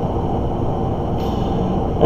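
A steady background rumble, even in level throughout, with no distinct events in it.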